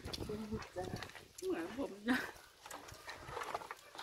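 Women chatting in Lao over a shared meal, with scattered light clicks from eating and tableware in the pauses.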